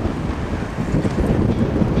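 Wind rushing over the microphone of a camera moving at speed, with a steady low rumble underneath.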